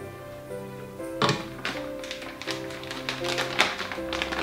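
Background music with a run of sharp taps and knocks from about a second in, the loudest about a second in and near the end: a spatula scraping and knocking almond cream out of a stainless steel mixer bowl into a piping bag.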